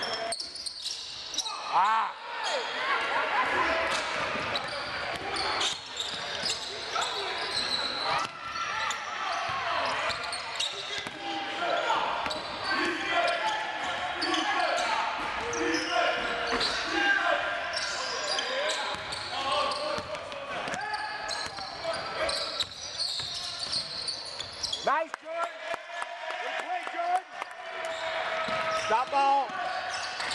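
Basketball bouncing and knocking on a gymnasium's hardwood floor during a game, amid continuous shouting and chatter from players and spectators.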